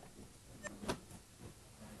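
Two faint clicks about a quarter second apart, over quiet room noise: buttons being pressed on the lectern's controls to power-cycle the projection system.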